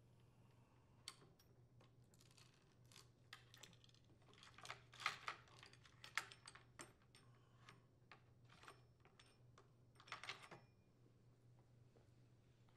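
Old saw chain being lifted off a Craftsman chainsaw's bar and sprocket: faint scattered metallic clicks and rattles of the chain links, busiest from about four to seven seconds in and again briefly around ten seconds.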